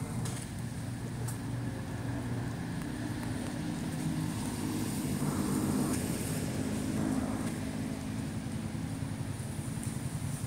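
Road traffic: the steady low rumble of vehicle engines running nearby, swelling a little midway, with one faint click about a second in.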